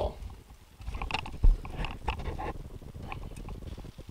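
Irregular handling knocks and clicks around a metal sluice box, with one heavy thump about a second and a half in.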